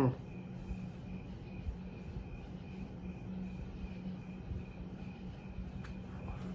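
Quiet background of a steady low hum with a faint, high, insect-like chirp repeating evenly about twice a second; a man's brief 'hmm' ends at the very start.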